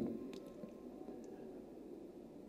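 A pause in a speech: faint, steady room tone of a hall with a low hum, and a couple of tiny clicks.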